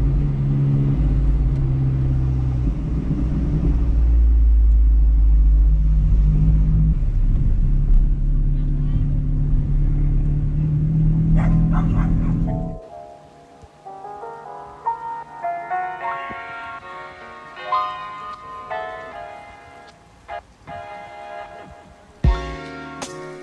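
Sports car fitted with a Record Monza exhaust, driven slowly and heard from inside the cabin: a steady low engine note with road noise. About 13 seconds in it cuts off suddenly and light music of quick, picked notes takes over.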